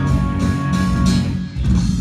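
Live country band playing an instrumental stretch between sung lines: strummed acoustic guitar and electric guitar with drums, with a short dip in level about one and a half seconds in.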